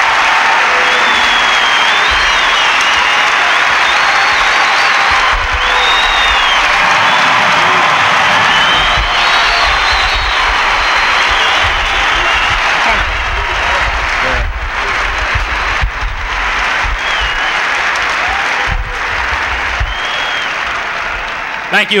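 A large arena crowd applauding steadily, the ovation dying down near the end.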